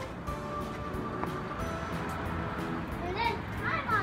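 Faint background music with steady held notes, and a child's voice calling out briefly near the end.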